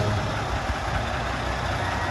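Fire engine idling with a steady low rumble.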